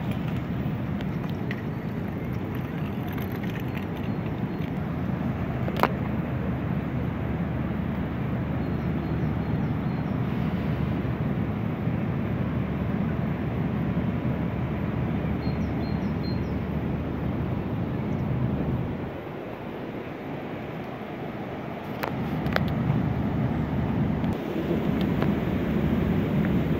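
A steady low rumble of wind on the microphone over open-air ambience, easing for a few seconds about three-quarters of the way through, with one sharp click about six seconds in.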